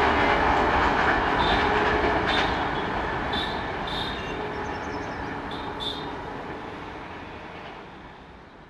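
Express passenger train's coaches rolling away on the rails, the wheel and track noise fading steadily as the train recedes. A few short high squeaks come from the wheels during the first few seconds.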